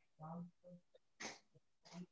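Near silence: room tone, with a faint short murmur just after the start and brief soft hisses about a second in and near the end.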